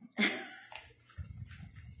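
A woman laughing softly, a short voiced sound near the start followed by low, irregular pulses of laughter in the second half.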